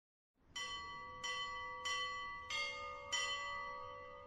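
Orthodox church bells struck five times at an even pace, about two-thirds of a second apart, each strike left ringing so the tones overlap.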